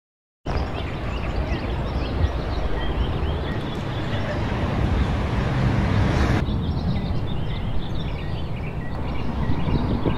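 Outdoor field sound of wind buffeting the microphone, a steady low noise with faint small-bird chirps above it. It starts suddenly about half a second in and shifts abruptly a little past halfway, where one outdoor recording cuts to another.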